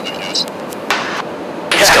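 Steady rushing in-flight noise inside a KC-135R Stratotanker's boom operator pod, with a brief burst of sound about a second in. A voice on the intercom begins near the end.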